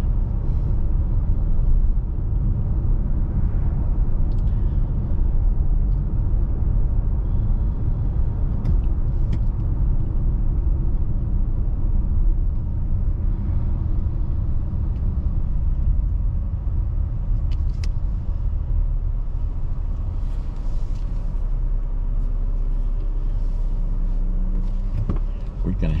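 Steady low road and engine rumble of a car driving, heard inside its cabin, with a few faint clicks.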